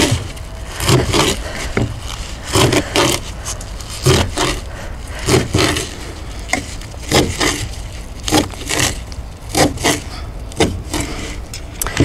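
Knife chopping kale leaves into thin ribbons on a plastic cutting board, in uneven strokes about twice a second, often in quick pairs, over a steady low rumble.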